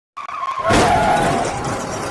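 Whoosh sound effect of an animated video intro: a tone that drops in pitch, then a loud rushing burst about two-thirds of a second in that fades away slowly.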